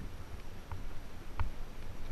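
Bike rolling along a gravel dirt trail: a low, steady rumble of wind and ground buffeting on the mounted camera, with a couple of sharp knocks as the bike rattles over bumps.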